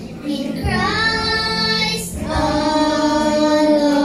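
A child and a woman singing a slow worship song together, holding long notes. The line breaks off about two seconds in and a new held note follows.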